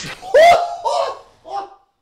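A man's excited outburst of laughter: one loud cry followed by two shorter laughs, each rising then falling in pitch. It stops abruptly near the end.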